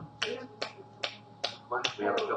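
Sharp clicks or claps in a steady, even rhythm, about two and a half a second, over a faint steady hum. A brief voice comes in near the end.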